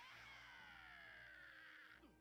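Near silence, with a faint pitched sound from the anime episode's audio track, drawn out and falling slowly in pitch, ending just before the end.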